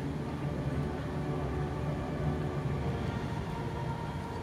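Steady low rumble of distant city traffic, with faint held notes of music carrying from afar; a higher sustained note comes in near the end.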